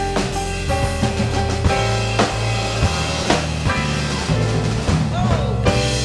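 Live jazz trio playing an instrumental passage: acoustic grand piano chords and lines over walking electric bass notes and a drum kit with bass drum, snare and rimshots.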